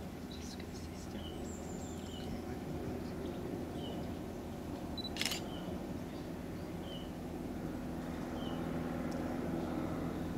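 Quiet outdoor woodland background with a bird repeating a short high call about every second and a half, and a single camera shutter click about five seconds in.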